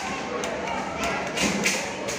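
Wooden ramp-walker toys rocking down a felt-covered incline, knocking with repeated soft thuds, over indistinct voices.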